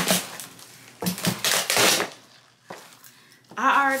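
Bubble wrap and clear plastic packaging crinkling and rustling as it is handled, in a short burst at the start and a longer one lasting about a second, followed by a lull; a voice comes in near the end.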